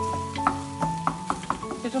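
Wooden spatula stirring and scraping food in a stainless steel pan as it fries, with a quick series of knocks against the pan over a light sizzle. Soft background music with held notes plays underneath.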